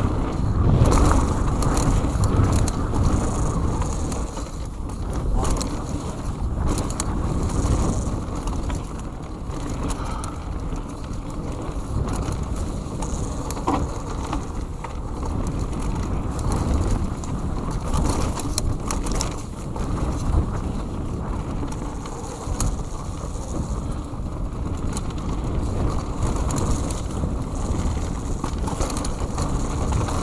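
Mountain bike running fast down a dirt trail: a continuous muffled rumble of tyres on dirt, broken by frequent knocks and rattles from the bike over bumps.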